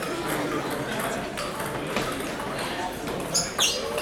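Table tennis rally: the celluloid ball clicks off the paddles and table several times over a murmuring crowd. A sharp, high squeak falls in pitch near the end.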